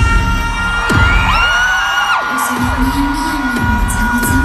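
K-pop concert music over an arena sound system, with heavy bass thuds about once a second under held synth tones, and a crowd screaming and cheering, loudest in the middle.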